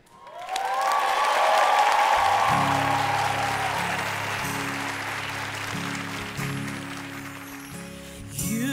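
Audience applauding, with some cheering voices at first, the applause slowly fading. A held low musical chord comes in about two seconds in.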